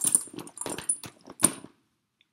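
Metal clasps and fittings of a Louis Vuitton Speedy Bandoulière's detachable leather shoulder strap clinking and clicking as it is handled, with two sharp ringing clinks, the louder one about a second and a half in.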